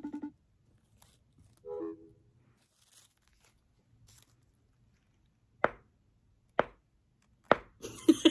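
Mostly quiet room while a phone call is placed. A short pulsing electronic tone cuts off just after the start, a brief hum comes about two seconds in, and three sharp taps come near the end, about a second apart.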